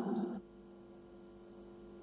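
Near silence: the last of a man's words fading out in the first half-second, then quiet chamber room tone with a faint steady hum.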